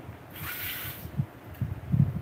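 Quiet handling of cookware at a table: a short soft hiss about half a second in, then a few faint low knocks as a frying pan of food is lifted toward a plate.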